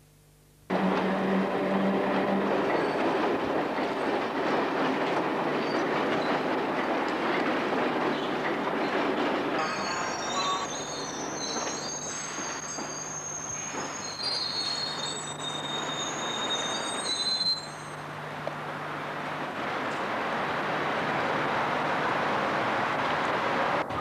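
London Underground train running on the rails, a loud rumble that cuts in suddenly about a second in. From about ten seconds in, a high-pitched metal-on-metal squeal wavers over it for several seconds.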